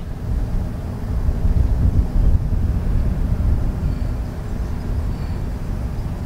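Wind buffeting an outdoor microphone: a loud, uneven low rumble throughout.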